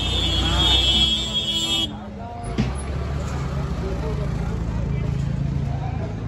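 Busy street ambience: voices of passers-by over the low steady hum of a running vehicle engine. A steady high tone sounds for the first two seconds and cuts off suddenly.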